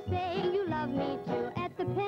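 A 1940s popular song: a voice sings with vibrato over a band accompaniment with a steady beat.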